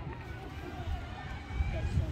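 Faint, distant voices of players and spectators calling out across an outdoor soccer field, over a low rumble that grows louder near the end.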